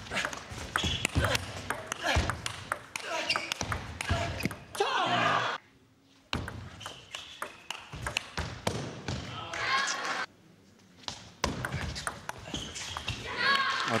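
Table tennis rallies: the ball clicking sharply off the paddles and bouncing on the table in quick series of ticks, broken by two short near-silent gaps between points.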